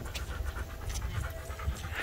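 A dog panting as it walks on a leash, over a steady low rumble on the microphone.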